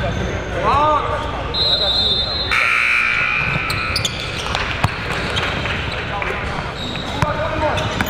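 A basketball bouncing on a gym floor, with crowd chatter echoing through a large indoor gym. A short, steady high tone sounds about a second and a half in.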